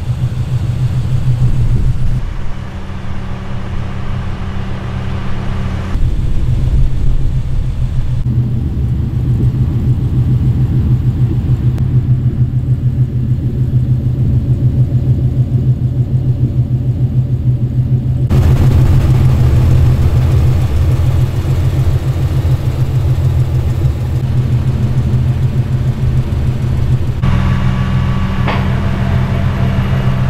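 Mazda RX-7 FD rotary engine idling, with a steady low hum and rapid pulsing from the exhaust. Its tone shifts abruptly a few times.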